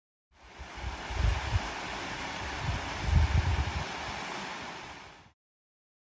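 Wind blowing over the microphone, a steady hiss with two strong low buffeting gusts about one and three seconds in. The sound starts and cuts off abruptly.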